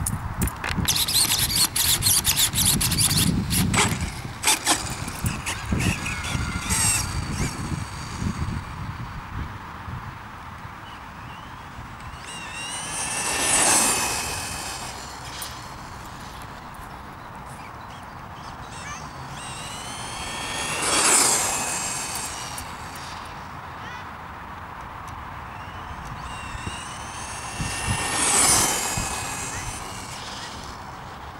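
Team Durango short course RC truck with a 12-turn brushless motor on a 2S LiPo, scrabbling and crunching as it drives off for the first several seconds. It then passes three times, about seven seconds apart, each pass a high electric motor and gear whine that rises and falls as it goes by.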